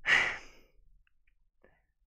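A man sighs once, a short breathy exhale of about half a second.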